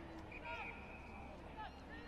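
Faint distant shouted calls of players on the ground, short voiced calls over a steady hum of open-air field ambience.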